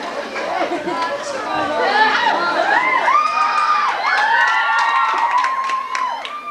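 Audience cheering and shrieking, many high voices overlapping. It swells over the first two seconds, holds loud, and eases off near the end.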